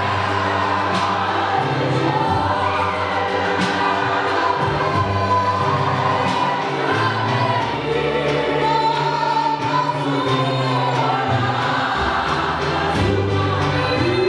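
Church congregation singing a gospel song together in chorus, led by a woman's voice on a microphone.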